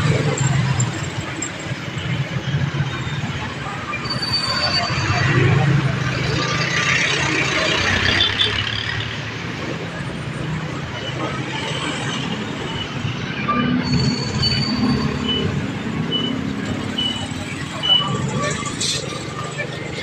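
Slow street traffic heard from a moving motorcycle: small engines of motorcycles, tricycles and cars running at low speed. A string of short, evenly spaced high beeps comes about two-thirds of the way through.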